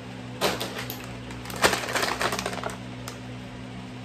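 A soft plastic pack of makeup remover wipes being picked up and handled, crinkling and clicking in two spells: a short one about half a second in and a longer one from about a second and a half.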